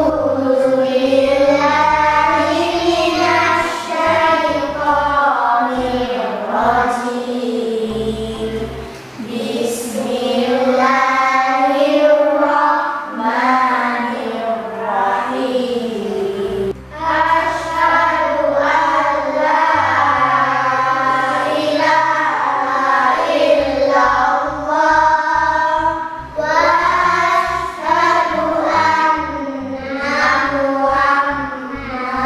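A class of young schoolchildren singing a song together in unison, in long sustained phrases with short breaks between lines.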